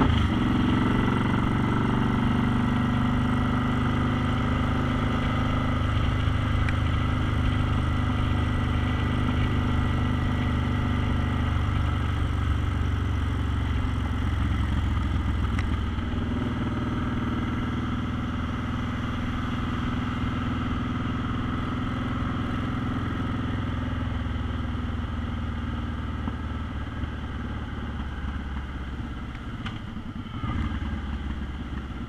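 Suzuki cruiser motorcycle's engine running steadily as it is ridden, pulling in gear, slowly getting quieter towards the end as the rider eases off.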